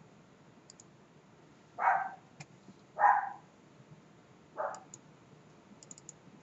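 Three short barks from a dog, about a second apart, with a few soft computer mouse clicks between them.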